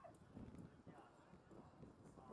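Near silence: faint, distant voices over low background noise, with a few soft, irregular low knocks.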